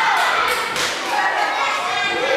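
Several sharp knocks in the first second, over indistinct voices.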